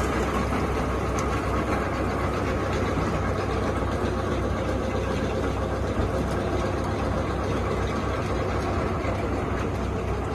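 Concrete batching plant running on its test run: a steady machinery noise with a low hum underneath, unchanging throughout.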